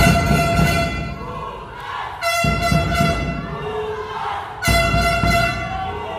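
Handheld air horn sounded in three long blasts of a steady tone, starting at once, about two seconds in and near five seconds in, over crowd and ring noise.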